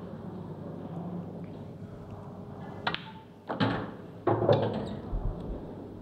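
Pool balls on an eight-ball table over a low room hum: a sharp click about three seconds in as the cue ball is struck, then two louder knocks within the next second and a half as balls collide and an object ball is potted.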